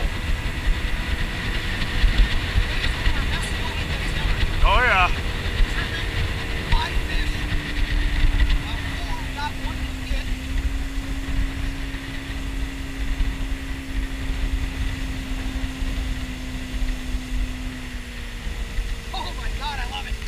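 Boat's outboard motor running steadily at cruising speed, its pitch easing down slightly about eight to ten seconds in, with wind rumbling on the microphone.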